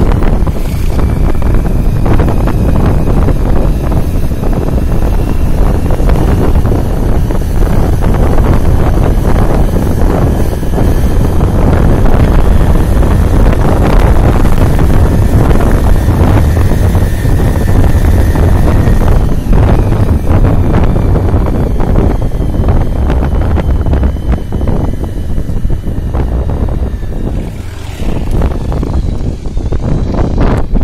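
Heavy wind rumble on the microphone of a moving motorbike, with the bike's engine faintly underneath. The noise is loud and steady throughout, easing briefly near the end.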